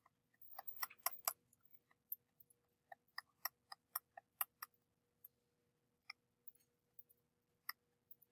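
Quiet, sharp computer mouse clicks: a quick cluster in the first second or so, then single clicks a few tenths of a second apart that thin out toward the end. A faint steady hum runs underneath.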